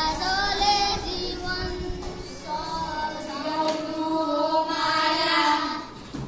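A boy singing a Nepali song solo, holding long notes with vibrato; the line ends near the end.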